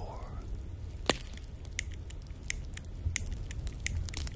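A few short, faint close-miked clicks, the clearest about a second in, over a steady low hum.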